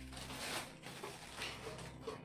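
Faint crinkling of the thin plastic wrapping taken off a new stainless-steel pressure cooker, in a few short rustles.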